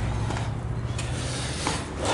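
A door being passed through, with handling and rubbing noise close to the microphone and a faint click near the end. A low steady hum under it stops shortly before the end.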